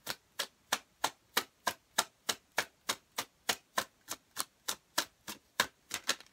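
A tarot deck being shuffled overhand: a steady, even run of sharp card slaps, about three a second.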